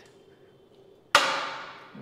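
Pec deck chest-fly machine giving one sharp metallic clank about a second in, ringing briefly as it fades: the weight stack knocking at the turn of a repetition.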